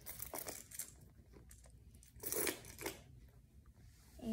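A ring of keys with a car key fob and pepper spray clinking and rattling as they are put into a small handbag, with rustling of the bag; the loudest clatter comes a little over two seconds in, and a smaller one just before three seconds.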